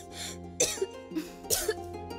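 A woman coughing a few times in short breathy bursts over sustained background music.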